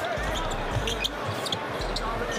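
A basketball bouncing on a hardwood court during live play, with voices in the background of a large arena.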